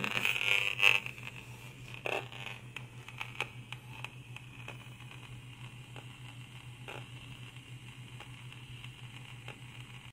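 Cloth rustling and handling noise for about the first second as a fabric shielding blanket is drawn over a handheld RF meter. After that comes a steady low hum with scattered faint clicks.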